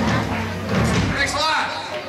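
A live rock band's held final chord cuts off, followed by a low thump from the band as the song ends. Voices from the audience follow in the second half.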